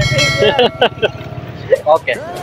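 Short snatches of voices over street traffic, with a vehicle running close by as a steady hum and tone.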